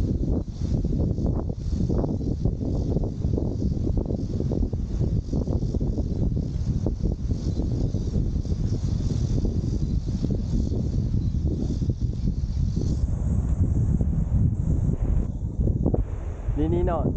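Wind buffeting the microphone: a steady low rumble that rises and falls.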